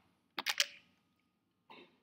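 Three quick, sharp clicks close together about half a second in, then a fainter short sound near the end.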